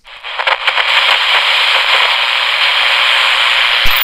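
Loud crackling static hiss of an old analog television between channels, with a faint low hum joining about halfway; it cuts off with a thump near the end.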